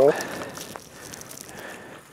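A brief exclamation at the very start, then faint crackling and rustling of handling and movement on snow.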